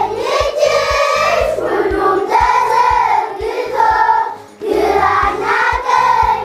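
A class of children singing together in chorus over a steady low beat, with a short break about four and a half seconds in.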